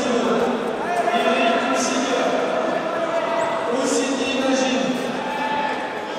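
Several men's voices shouting and calling out, overlapping one another, with no clear words.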